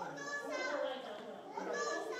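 Children's voices talking and calling out, high-pitched and overlapping, in two louder bursts.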